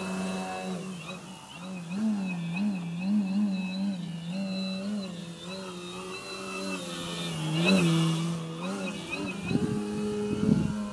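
Model aerobatic plane's motor and propeller droning, the pitch rising and falling again and again with the throttle as it hangs nose-up in a hover and flies low. It swells louder for a moment near the end.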